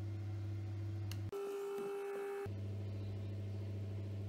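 Steady low electrical hum. About a second in it gives way to a steady, higher single tone lasting about a second, then the hum resumes.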